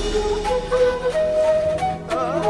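Background film music: a flute plays a slow melody of held notes that step up and down, some sliding into the next, over soft sustained accompaniment.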